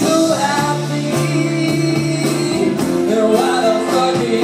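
Live band music with a singer singing over sustained guitar chords.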